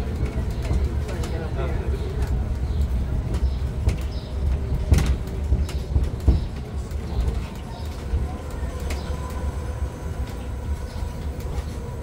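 Open-carriage tourist road train rolling along cobbled streets: a steady low rumble from the carriages, with two sharp knocks about five and six seconds in.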